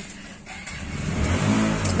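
A motor vehicle engine running and growing steadily louder from about half a second in, with a low engine note coming through in the second half.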